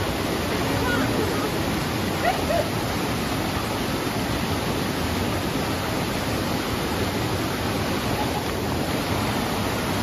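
Rocky stream rushing over boulders in small cascades: a loud, steady rush of water. A few faint voices are heard briefly about two seconds in.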